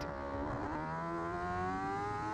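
Superstock racing motorcycle engine at high revs, heard through an onboard camera, its pitch climbing steadily as the bike accelerates hard, with a brief dip about half a second in.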